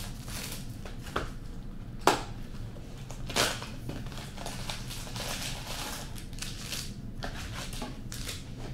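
Plastic wrapping on trading card packs being torn open and crinkled by hand, in irregular bursts with a sharp click about two seconds in, along with the light rustle of cards being handled.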